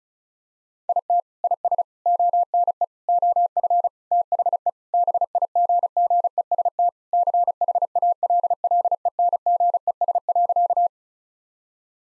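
Morse code sent at 35 words per minute as a single steady tone of about 700 Hz, keyed in quick dots and dashes. It starts about a second in and stops about a second before the end. It spells out the sentence just spoken, "It is one of the biggest challenges".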